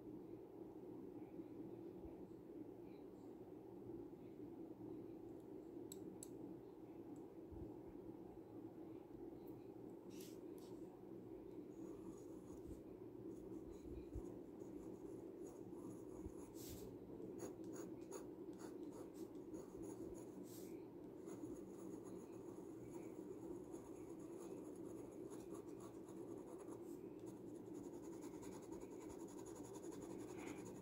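Asxma glass dip pen's glass nib scratching faintly across sketchbook paper as it writes and draws an ink line, with a few light clicks over a low steady hum.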